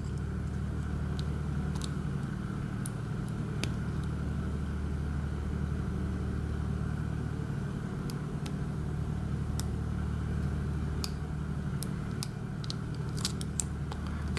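Steady low drone of a running engine generator. A dozen or so faint, scattered metallic clicks come from a pick working the security pins of an IFAM Uno 80 dimple lock.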